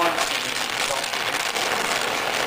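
Gas welding torch flame hissing steadily as it heats a dent in a steel two-stroke dirt-bike expansion chamber.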